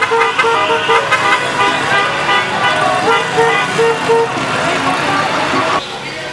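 Motorcycle horns tooting in runs of short, rapid beeps over the running engines of a crowd of motorcycles, with voices shouting. The sound drops off suddenly just before the end.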